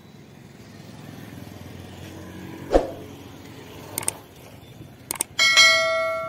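Quiet street traffic rumble, then near the end a couple of clicks and a loud, bright bell chime that rings on and fades: the click-and-ding sound effect of a YouTube subscribe-button and notification-bell animation.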